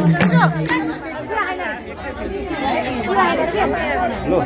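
Live dohori folk music, madal drumming with singing and hand claps, stops about a second in. Several people then chatter at once.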